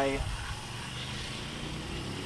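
Steady, fairly quiet outdoor background noise with a faint low hum, after a single spoken word at the start.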